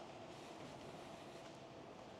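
Faint footsteps on a steel staircase with grated treads, a few soft taps over a low, steady hum of background noise.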